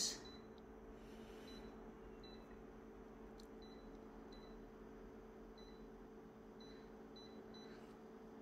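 Faint steady hum of a multifunction copier idling, with soft short touchscreen beeps about once a second as its settings are tapped.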